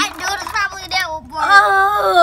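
A child's high voice making long, wavering wordless cries, with held notes that slide up and down.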